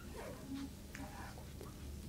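Quiet room tone with a steady low hum and a few faint, brief murmurs of voices.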